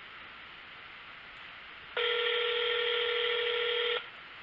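Telephone ringback tone through the phone's speaker: a steady buzzing tone that starts sharply about halfway through and lasts about two seconds, meaning the line is ringing at the called end. Faint line hiss before it.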